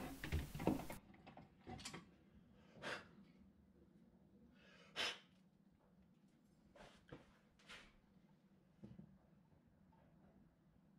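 A few faint, short knocks and rustles of handling, the loudest about five seconds in, as the drilled hammer head is unclamped from the drill-press vise and picked up.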